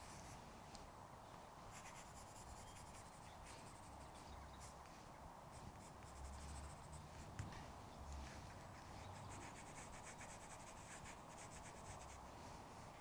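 Faint scratching of a graphite pencil shading on paper, in many short, quick strokes.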